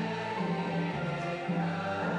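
Music with a choir of voices singing long held notes over a low sustained note, changing pitch every half second or so.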